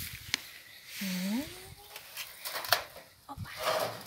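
Thin painted steel roofing sheets being handled and lifted, giving a few sharp metallic clicks, the loudest a little before three seconds in. About a second in, a short wordless voice sound glides upward in pitch.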